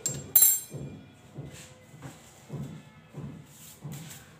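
A sharp metallic clink with a brief ring about half a second in, as metal kitchen utensils are handled, followed by faint soft knocks.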